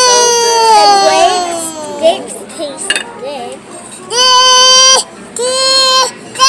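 A small child crying in long wails. The first drops slowly in pitch over about two seconds, and two shorter wails follow near the end.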